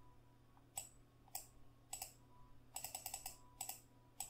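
Computer mouse clicking, faint and sharp: single clicks about half a second apart, then a quicker run of clicks in the second half.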